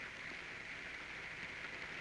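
A steady, even hiss with no speech or music.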